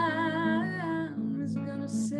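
A woman singing with acoustic guitar. She holds a long note with vibrato for about the first second while the guitar chords ring on beneath it.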